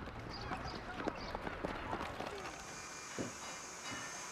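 Playground ambience: faint children's voices and quick running footsteps on tarmac. About two and a half seconds in it gives way to a quiet indoor room tone with a steady faint hiss and a single soft thud.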